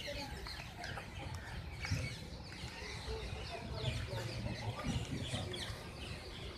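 Birds calling, many short calls overlapping, over a low background rumble.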